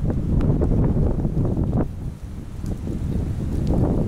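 Wind buffeting the microphone: a loud, low rumble that eases briefly a little past the middle, then builds again.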